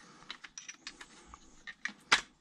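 Faint scattered clicks and light knocks of plastic and metal parts as the RC truck's front suspension assembly is worked free by hand, with a sharper click near the end.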